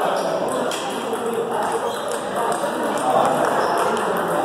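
Table tennis balls clicking off rubber paddles and the table: sharp irregular ticks of play, over a steady murmur of voices.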